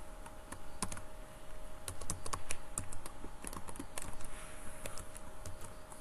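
Computer keyboard being typed on as a password is entered: an irregular run of separate key clicks, thickest a couple of seconds in.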